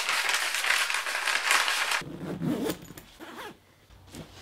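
Dry, continuous rustling and scraping from hands handling things, loud for about two seconds and then cut off suddenly, followed by fainter bumps and rustles that die away.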